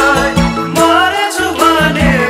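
Nepali Samala folk song: voices singing a melody over a steady percussion beat.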